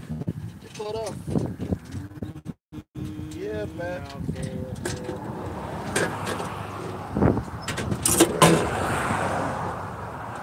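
Semi truck's diesel engine running steadily under low talk, with a few sharp metallic knocks in the second half as mechanics work on the battery cables.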